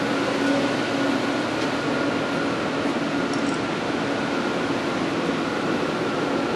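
Steady air-handling hum of room ventilation, an even whoosh with faint steady tones held in it.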